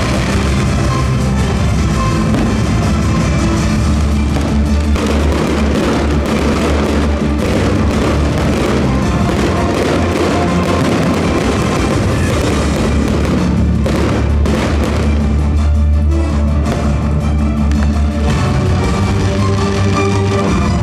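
Loud show music with heavy bass for a pyromusical fireworks display, with firework bursts and crackling mixed in, heaviest just past the middle.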